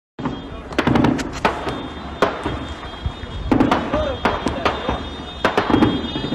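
Gunfire: irregular sharp shots, some single and some in quick clusters of two or three, over a low rumble.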